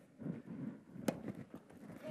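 A tennis racket strikes a ball once, a single sharp pop about a second in, as the ball is fed into a doubles drill at the net.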